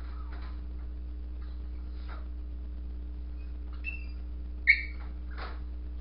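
A small dog confined in a wire crate gives a couple of faint high squeaks, then one short, loud, high-pitched whimper about three-quarters of the way through. Faint scrapes and rattles from the wire crate as the dog climbs, over a steady low electrical hum.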